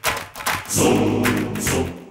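Dramatic background music: a choir-like sung chord over several sharp percussion hits, starting suddenly.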